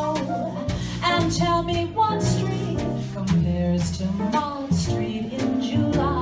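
Live small jazz combo playing, with walking upright bass, piano and drums keeping time under a woman's voice singing a melody.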